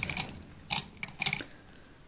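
A few sharp clicks and light taps from makeup tools or containers being handled, the loudest a little under a second in, followed by a few smaller ones.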